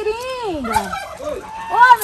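Domestic geese honking: a series of calls, one drawn out and falling in pitch near the start, the loudest near the end.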